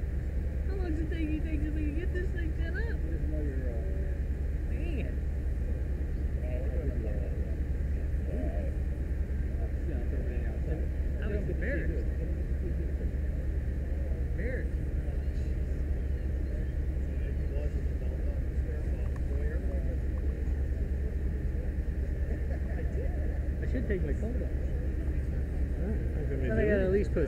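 A steady low engine rumble, typical of a fire engine idling on scene, under faint, indistinct voices.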